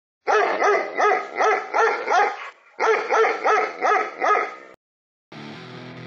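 A dog barking in two quick runs, six barks then five, about three a second, with a short break between them. Guitar music starts near the end.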